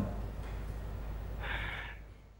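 Faint low hum of room noise, with a short intake of breath about a second and a half in.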